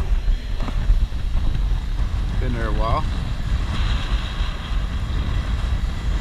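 Steady wind rumble on the microphone, with one short rising tone about two and a half seconds in.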